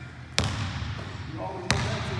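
A basketball bouncing twice on a hardwood gym floor, just over a second apart, each sharp bounce echoing around the large hall.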